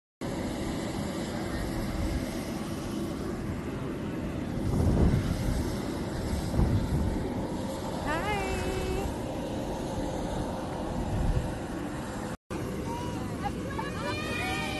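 Steady outdoor rumble and hiss on a phone microphone, with a few louder low swells. About eight seconds in a single voice whoops briefly, and after a cut near the end several voices call out over one another.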